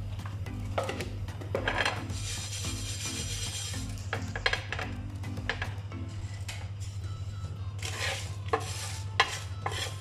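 A spatula stirs and scrapes whole dry spices (coriander seeds, cumin, fenugreek and dried red chillies) around a flat nonstick pan as they dry-roast. It makes light scrapes and clicks that come thicker near the end.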